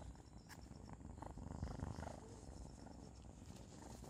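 A kitten purring close by, faint and low, louder for a moment in the middle.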